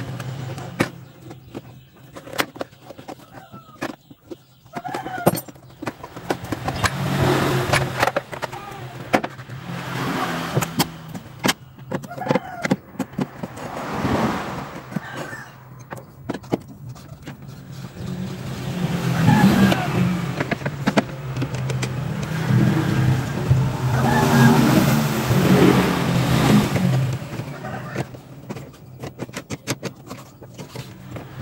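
Irregular clicks and knocks of a screwdriver and metal parts as the gear shift lever assembly of a Suzuki Carry is worked loose and removed, over a steady low hum.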